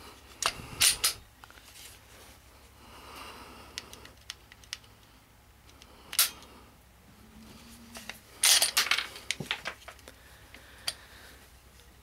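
Glock 26 pistol being worked by hand, loaded only with a snap cap: sharp metallic clicks and snaps of the slide and action, a few about half a second to a second in, one around six seconds, and a quick cluster of clicks around eight and a half to nine and a half seconds.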